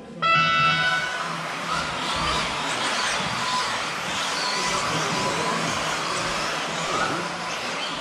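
An electronic race-start tone sounds for about a second, then a pack of 1/10-scale 2WD electric off-road RC buggies accelerates away and runs around the astroturf track, a steady noise of motors and tyres with whines rising and falling.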